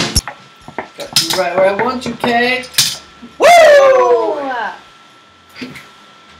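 A high voice gives a long exclamation that falls in pitch about halfway through, after some shorter vocal sounds. A few sharp clicks are heard before it.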